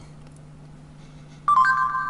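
Google voice search on a Samsung Galaxy S3 plays a short electronic chime from the phone's speaker about one and a half seconds in. The chime marks the end of listening once the spoken question has been recognised. Before it there is only a faint steady hum.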